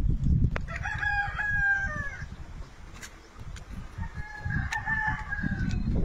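A rooster crowing twice, each crow about a second and a half long, the first ending in a falling glide and the second starting about four seconds in, over a constant low rumble.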